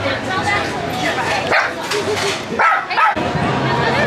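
A small dog barking, with people's voices around it.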